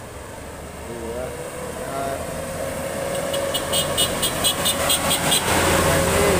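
A bus engine growing steadily louder as the bus draws up and passes close by, over general road traffic. For about two seconds midway there is a rapid high ticking.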